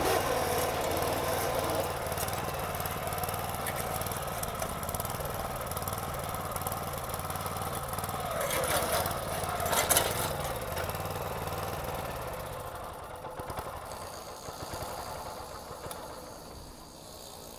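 Shibaura KS401 walk-behind tiller's small 4-horsepower engine running with the clutch engaged, driving the machine along. A little past halfway it briefly rises in pitch with a sharp clatter, then the engine sound fades away about three quarters of the way through.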